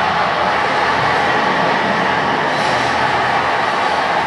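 Loud, steady rushing noise from a video's soundtrack played through a hall's loudspeakers, cutting in suddenly and cutting off just as it ends.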